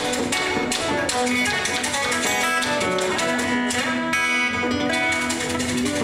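Acoustic guitar music in the Malagasy style, picked in quick, dense runs of notes. From about four seconds in, a low note rings on under the picking.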